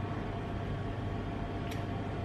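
Steady low hum and hiss of room tone, with one faint brief click near the end.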